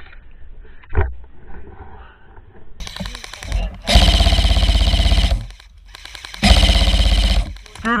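Airsoft electric rifle (AEG) firing two full-auto bursts, the first about four seconds in and lasting about a second and a half, the second shorter, each a fast even rattle of shots. A single click about a second in.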